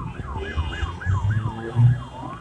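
Emergency-vehicle siren in a fast yelp, about four falling sweeps a second, over low rumbling bursts, the loudest near the end.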